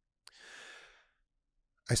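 A man's soft breath, about half a second long, just after a small mouth click a quarter second in.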